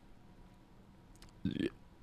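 Near silence broken by a couple of faint clicks, then a short low throat noise from the man at the microphone, like a small burp, about a second and a half in.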